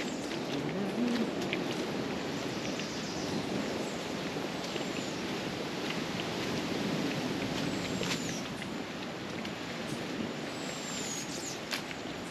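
Footsteps crunching on a dry, leaf-covered dirt trail, with a bird giving three short high falling whistles: about halfway through, again about two-thirds in, and near the end.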